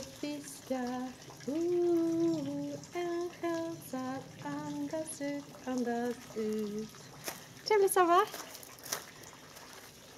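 A woman singing a Swedish song unaccompanied, holding notes that step up and down, which stops about seven seconds in; a short sliding vocal exclamation follows about a second later, with a few clicks.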